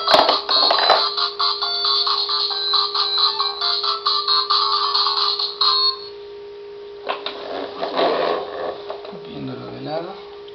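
Electronic melody from a Fisher-Price ride-on toy's light-up sun face, set off by pressing its nose. It plays for about six seconds and then stops abruptly. About a second later comes a short spell of plastic knocking and rattling as the toy is handled.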